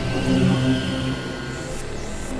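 Experimental electronic synthesizer music: layered held drone tones that shift pitch every half second or so, over a steady noisy hiss.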